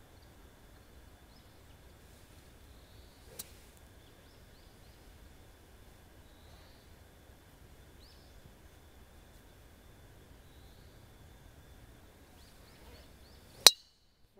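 A golf driver striking a teed ball once near the end: a single sharp, loud crack off the clubface. Before it, a faint outdoor background with a few short high chirps and one small click.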